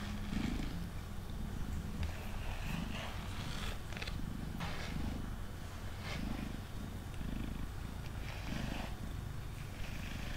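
Domestic cat purring steadily, the purr swelling and easing about once a second with its breathing. A grooming brush makes short scratchy strokes through its fur.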